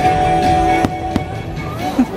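Fireworks show with its orchestral soundtrack music playing steadily, and two sharp firework bangs close together about a second in.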